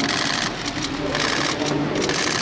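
Camera shutters firing in rapid bursts of fast clicks, one burst at the start and another from a little past a second in, over a murmur of voices in the room.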